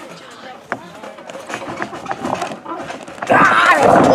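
Low murmur of voices with a sharp knock about a second in, then near the end a loud burst of noise and shouting as a wrestler is dropkicked out of the backyard wrestling ring.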